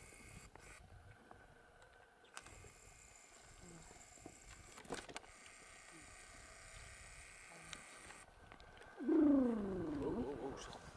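Faint outdoor quiet with a couple of small clicks. Near the end, one loud, drawn-out voice sound falling in pitch, like a person's long 'oh'.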